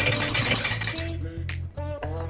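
Background music with a steady bass line. In the first second, a rapid scratchy clinking as a utensil scrapes solid coconut oil from a glass jar into a steel frying pan.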